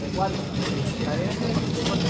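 Indistinct murmur of voices with a short spoken word just after the start, and light rustling as packs of boxer shorts are handled.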